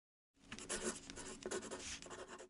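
Pen scratching across paper in quick, irregular strokes, a handwriting sound effect that starts about a third of a second in.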